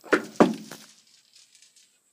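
Soybeans rattling against the metal hopper in two short bursts, each trailing off into a brief crackle of settling beans.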